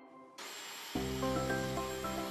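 Cartoon electric mixer motor switched on: a whirring hiss starts suddenly about half a second in. About a second in, a low steady hum and background music join it.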